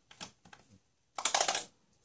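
Plastic eggs and small plastic toys clicking and clattering against each other as a hand rummages through a bin of them: a few light clicks, then a louder quick run of rattling clicks just past a second in.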